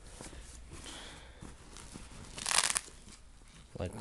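Fabric gym bag being handled, rustling softly, with one brief louder rasp a little past halfway.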